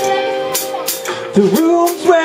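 Live rock band playing: electric guitars and drum kit, with held melodic notes, a downward-and-back pitch slide about one and a half seconds in, and cymbal strikes about twice a second.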